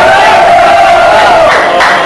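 Men's voices chanting one long held note in Lebanese zajal over crowd noise. The note breaks off about a second and a half in.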